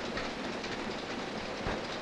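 Steady noisy background ambience with no clear pitch, and one faint click about one and a half seconds in.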